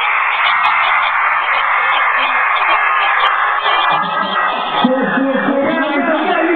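Live concert sound: a dense wash of music and crowd noise, with a man's voice on the microphone coming back in about four seconds in.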